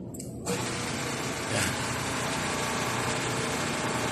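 Hydraulic power unit of a 3-in-1 busbar punching, cutting and bending machine switching on about half a second in and running steadily.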